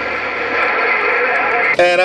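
Hiss and static from a President HR2510 mobile radio's speaker on an open channel between transmissions, growing slowly louder. Near the end a man's voice comes over the radio.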